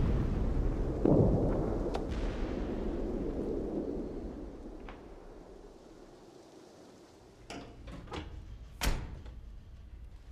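Artillery shell explosion: a heavy blast about a second in, its deep rumble dying away over the next few seconds. Later come a few sharp knocks, the loudest about a second before the end.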